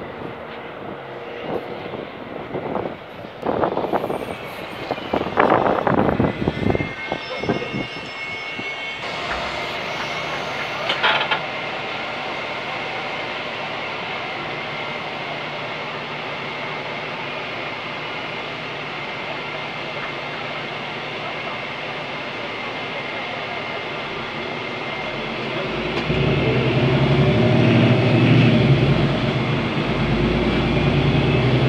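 Ursus CitySmile 12LFD city bus with a Cummins ISB6.7 diesel engine. First the bus is heard from the roadside with uneven traffic noise as it pulls up. Then comes a steady hum inside the cabin, and about 26 s in the engine note grows louder and deeper as the bus pulls away.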